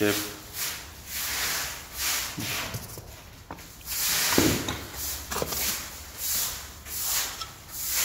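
Concrete tiles scraping and rubbing against one another and the cardboard box as they are slid out of it, in repeated short strokes, the loudest about four seconds in.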